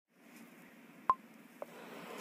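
Faint hiss starting up as a video's audio begins, with a short, sharp beep about a second in and a softer click half a second later.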